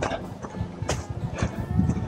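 Footsteps of a person walking on a dirt trail: a run of soft, repeated steps.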